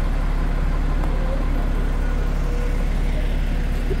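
Street traffic: a steady low engine hum under constant road noise.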